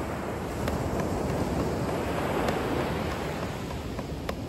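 Steady wind on the microphone and ocean surf, with a few faint taps of drumsticks on a practice pad.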